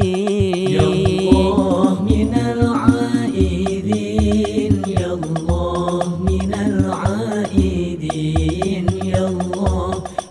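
Sholawat song in banjari style: a male voice singing Arabic devotional verses over a steady, repeating low drum beat.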